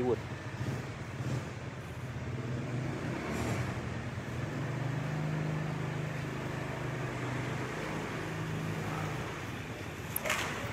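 A motor vehicle's engine hum over outdoor background noise, growing louder from about four seconds in and fading again near the end.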